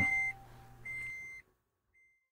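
High-pitched electronic beeps, likely the car's warning chime with the ignition on: a steady tone sounds twice, each for about half a second, with a fainter lower tone under the first. The sound then cuts out abruptly to silence about two-thirds of the way through.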